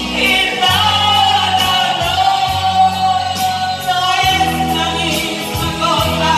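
Women singing a song karaoke-style into microphones over a backing track with bass and a steady drum beat.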